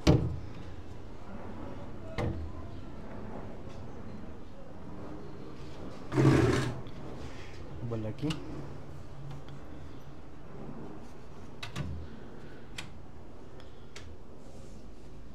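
Wooden cabinet doors on concealed cup hinges being swung and shut against a bookcase frame: a sharp knock right at the start, a longer clatter about six seconds in, and a few lighter taps and clicks in between and near the end.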